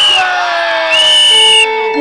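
A group of children cheering and shrieking, with two long high-pitched screams: one at the start and one about a second in. Background music comes in near the end.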